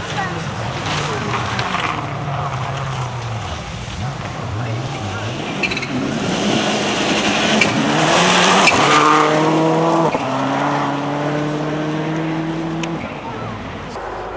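Subaru Impreza rally car's engine at full throttle on a loose forest stage, its pitch climbing as it comes past loudest with a spray of gravel and mud, then dropping in two steps as it changes up, holding and fading away near the end. A wavering engine note from the approach is heard in the first seconds.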